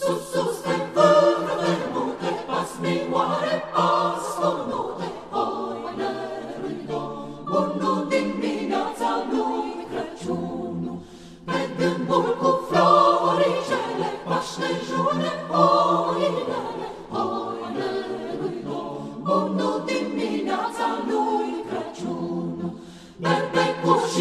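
A choir singing a cappella in a Romanian choral suite, coming in all at once at the start, with a brief break between phrases about ten seconds in.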